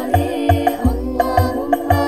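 Banjari sholawat song: women's voices singing a devotional melody over a steady beat of deep drum hits, about two a second.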